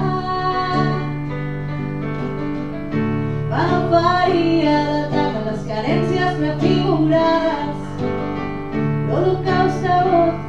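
A live song performed by a woman singing to acoustic guitar and electric keyboard accompaniment.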